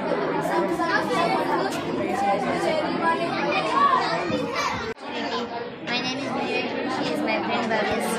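Many children's voices chattering at once, with no single clear speaker. There is a brief break about five seconds in.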